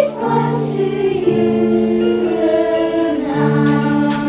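Children's choir singing a slow Russian lullaby in long held notes.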